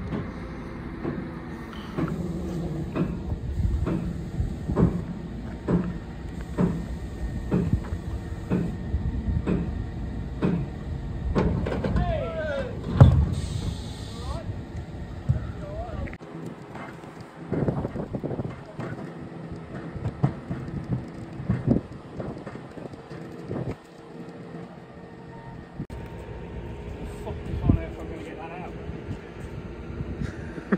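Centurion tank being winched up a steel low-loader ramp: metal clanks about one a second over a low rumble, a louder bang with a brief squeal about thirteen seconds in, then quieter scattered knocks once the rumble stops.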